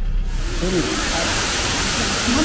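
Rushing water of a waterfall, a steady noise that comes in suddenly about a third of a second in, with voices faint beneath it.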